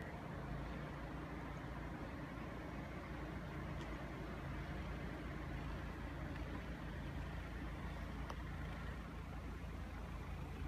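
An engine running steadily at an even pitch, from a vehicle clearing snow off the street, with blizzard wind noise underneath.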